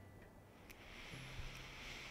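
Near silence: quiet room tone with a few faint clicks, then a soft faint hiss from about a second in.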